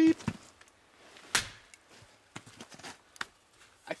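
A short censor bleep at the very start, then a single sharp chop about a second and a half in as a Wetterlings Backcountry Axe head bites into a knotty log round, followed by a few faint knocks. The blade sticks in the knotty wood without splitting it.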